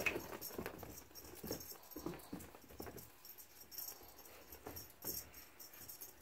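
Cat scampering and pouncing on carpet after a feather wand toy: irregular soft scuffs, thumps and rustles of paws and toy.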